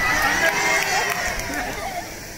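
Several people's voices talking and calling out over each other, with dull thuds of feet moving on the stage floor.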